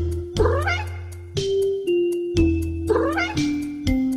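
A MIDI tune of held synthesized notes over a bass line, with a fast ticking beat of about four ticks a second. A cat meows twice within the tune: once shortly after the start and again about three seconds in.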